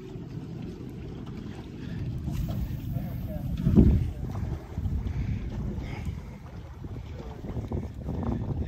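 Wind buffeting the microphone on an open boat, a steady low rumble with a strong gust just before four seconds in.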